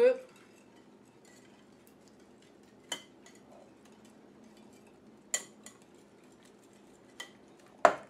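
Wire whisk stirring a creamy dressing in a glass mixing bowl: a faint steady stirring under a handful of sharp clinks of the whisk against the glass, the loudest near the end.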